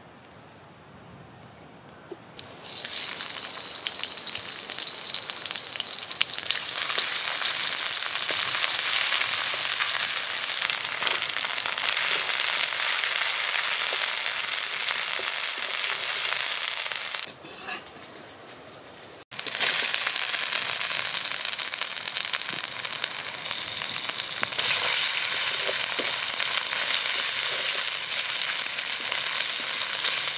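Food frying in hot oil in a steel wok: a hissing sizzle starts a couple of seconds in as the paste and chilies hit the pan, then builds to a steady, loud fry. Past the middle it falls away for about two seconds, then returns suddenly at full strength.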